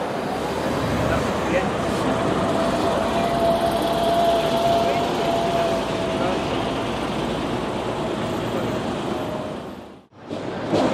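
City street traffic: cars passing with engine and tyre noise, under the indistinct voices of people on the pavement. A steady whine is held for several seconds in the middle, and the sound fades out at the very end.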